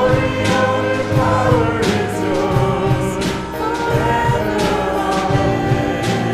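Church worship team of male and female voices singing a praise song through microphones, backed by a drum kit and keyboard, with regular drum and cymbal hits.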